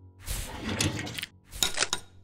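Sound effect of a dental equipment unit being slid into place beside the chair: a sliding rattle of about a second, then a quick run of clicks near the end.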